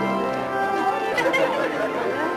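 Organ music with long held chords, overtaken about a second in by the chatter of many voices talking at once.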